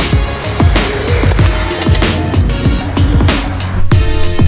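Upbeat electronic instrumental music with a steady drum beat and deep bass.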